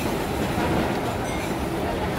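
Steady rumbling background noise with faint voices.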